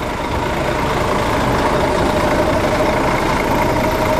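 Parked bus idling close by: a steady running noise with a held whine through it.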